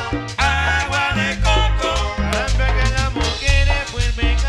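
Live Salvadoran chanchona band playing an instrumental cumbia passage: accordion melody over a heavy, repeating bass line, with congas and a steady beat.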